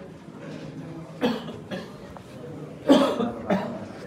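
A person coughing: two short coughs about a second in and two louder ones near the end, over a low murmur of voices.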